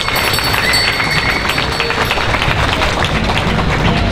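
Crowd applauding, dense steady clapping with a few voices mixed in.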